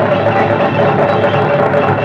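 Film soundtrack: background music mixed with a dense, noisy commotion, loud throughout with no break.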